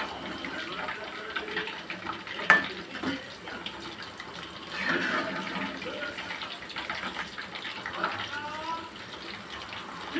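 Chicken pakodi deep-frying in hot oil in a kadai, a steady sizzle, with a metal slotted spoon stirring the pieces. A single sharp clink of the spoon against the pan comes about two and a half seconds in.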